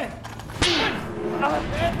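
A single sharp whip-like crack with a quick falling swish about half a second in, a comic sound effect marking a mock chop that 'cuts' the post.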